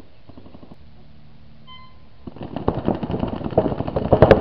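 A short electronic beep, then, from about halfway in, paintball markers firing in fast overlapping strings of pops that grow louder.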